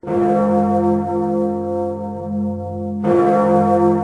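A large bell tolling: struck at the start and again about three seconds later, each stroke ringing on with a cluster of long, steady tones.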